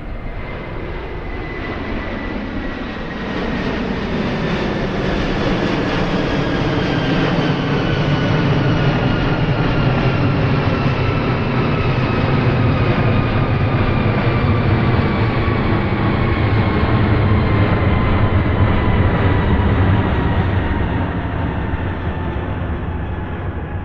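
A jet airliner passing low overhead. Its engine noise builds over the first few seconds and then holds, with a high whine that falls slowly in pitch throughout.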